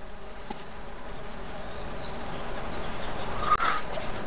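Steady insect buzzing in a garden ambience, growing slowly louder, with a brief brighter sound near the end.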